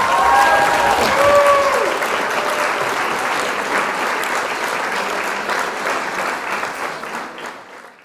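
Audience applauding, the clapping tapering off toward the end.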